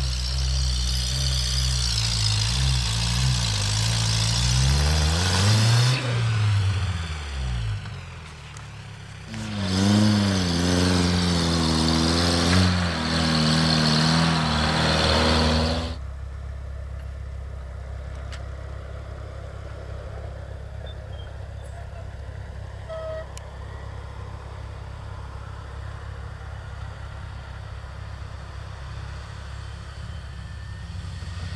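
Off-road 4x4 engine revving under load while climbing a snowy slope, its pitch rising and falling with the throttle. About halfway through it changes abruptly to a quieter, steady low engine drone.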